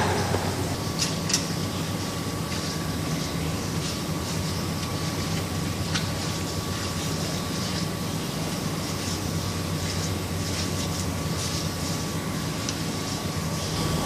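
Steady low machinery hum with a thin steady whine above it, and a few faint clicks and scrapes of hands working inside the cast-iron body of a water-pump Y-strainer.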